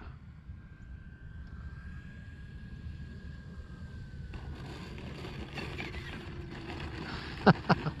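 Electric motor and propeller of a 6S electric RC Cessna on a throttled-back landing approach: a faint steady whine that drifts slightly lower and stops about four seconds in, over a constant rumble of wind on the microphone. A couple of sharp clicks near the end.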